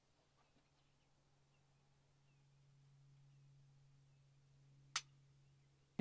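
Near silence, then a single sharp click about five seconds in: a Glock pistol's trigger breaking on a fast dry-fire pull of the unloaded gun. A faint steady low hum underlies it.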